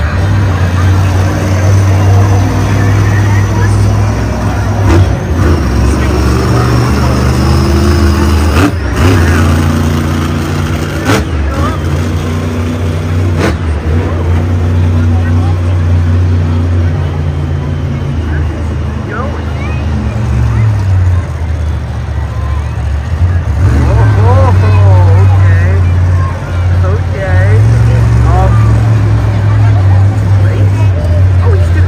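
Monster truck engine running loud and revving up and down: Grave Digger's supercharged V8 on its run, after the trucks idle together in the lineup. A few sharp cracks come between about 5 and 14 seconds in.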